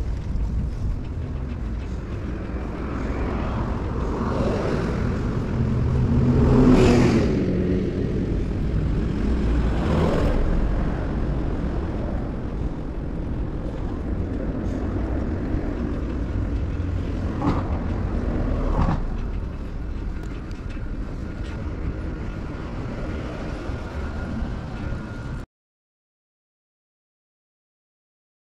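Street traffic going by: a steady low rumble, with vehicles passing, the loudest about seven seconds in. The sound cuts off just before the end.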